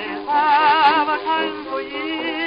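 A 1920s dance-orchestra record plays an instrumental melody with heavy vibrato over sustained accompaniment. The sound is cut off above the upper midrange, as on an old 78 rpm transfer, and a single surface click comes a little before the middle.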